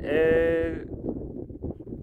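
A man's drawn-out "eee" hesitation sound, one held, steady vowel for under a second, followed by wind rumbling on the microphone.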